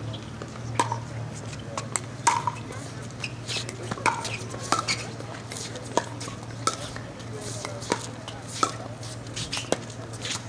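Pickleball rally: sharp pops of paddles hitting the plastic ball, coming irregularly about once a second.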